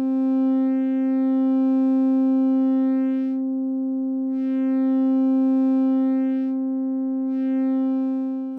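A single sustained synthesizer note running through a Trogotronic m/277 tube VCA, auto-panned by a slow triangle-wave LFO on its pan input. The pitch holds steady while the upper overtones fade away and come back twice, a few seconds apart, as the pan sweeps. Distortion is added to the channel being faded out.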